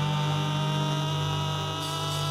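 A steady, held electric drone from the band's amplified stage sound, a sustained chord with a hum-like low tone, with no drums or singing under it.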